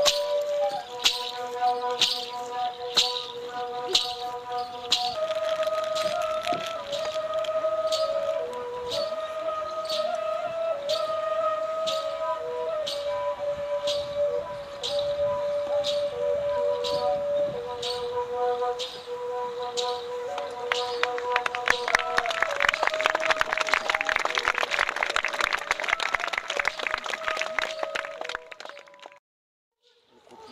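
Indigenous Brazilian ritual music: several wind instruments, flute-like, hold long notes together and step between pitches over a regular beat about twice a second. About 21 seconds in, a thick fast rattling joins in, and everything cuts off abruptly just before the end.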